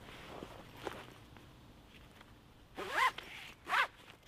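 A zip pulled quickly twice, about three seconds in and again near the end, each pull rising and falling in pitch, after faint rustling of gear being handled.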